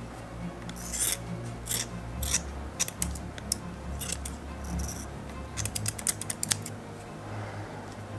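Scissors snipping through woven fibreglass cloth: a series of sharp snips, coming in a quick run of cuts at about five and a half to six and a half seconds in.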